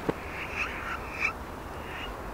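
Short croaking animal calls, about two a second, each ending with a rising note, over a faint steady hiss.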